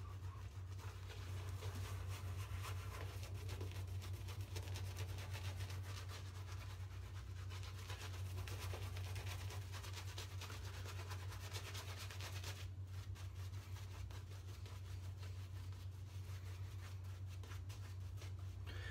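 Shaving brush scrubbing thick lather onto a bare scalp: a soft, fast bristly rasping, over a steady low hum.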